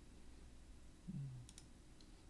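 Two quick computer mouse clicks about one and a half seconds in, just after a brief low falling hum. Otherwise faint room tone.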